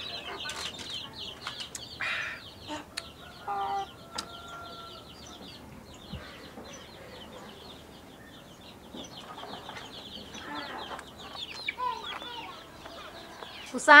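Chickens clucking now and then over a steady run of fast, high chirping, with a couple of short rustles in the first two seconds.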